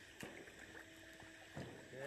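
Near silence between speech: a faint outdoor background with a faint steady tone in the middle and a couple of soft clicks.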